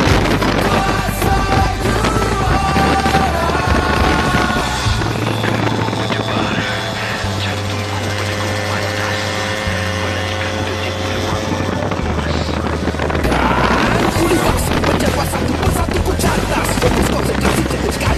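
Background music: an instrumental stretch of a song with a held bass line that shifts every second or two under sustained tones.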